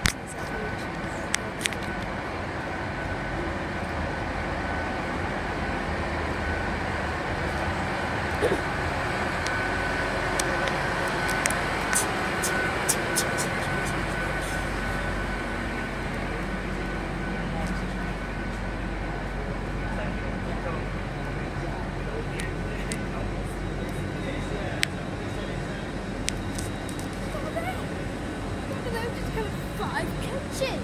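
Steady drone and whine of a stationary GWR Class 800 train standing at the platform, with scattered sharp clicks from walking on the platform. The low rumble gets stronger about halfway through.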